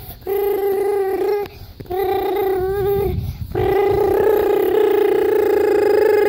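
A child's voice imitating a car engine with a buzzing "brrr", three held buzzes at a steady pitch. The last one starts about halfway through and is the longest.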